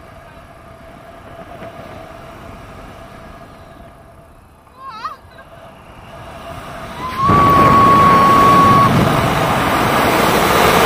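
Wind rushing over the camera microphone in tandem paraglider flight, jumping suddenly much louder about seven seconds in as the wing banks into a steep turn. A brief wavering high sound comes about five seconds in, and a steady high tone sounds for a second and a half over the loud wind.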